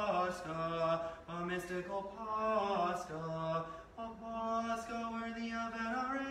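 Orthodox liturgical chant: a voice chanting in held notes that step between a few nearby pitches, with short breaths between phrases.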